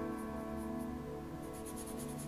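Soft background music with held notes, over quick repeated scratches of a bristle brush working oil paint on the palette and paper.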